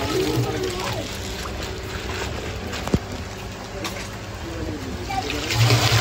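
Water trickling and splashing from a plastic fish bag held in a hand net, with voices in the background and one sharp click about three seconds in.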